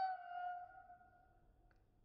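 A toddler's high-pitched, long-held vocal note that slowly fades and trails off just before the end, followed by a faint click.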